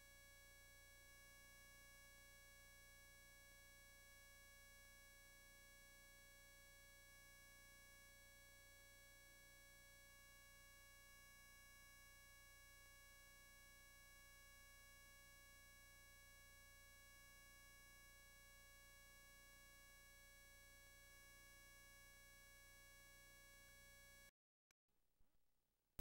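Near silence: a faint steady hum with a set of thin steady high tones, the noise of the recording or transfer chain during a blank stretch. Near the end it cuts off to dead silence.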